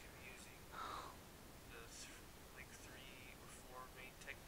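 Near silence, with faint whispered speech.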